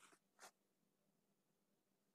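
Near silence: faint room tone, with two brief faint noises in the first half-second.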